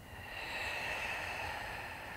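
A woman's long, audible exhale, a breathy sigh that swells over the first half second and then slowly tapers off.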